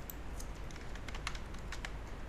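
Computer keyboard being typed on: a quick run of light keystrokes as a six-character password is entered.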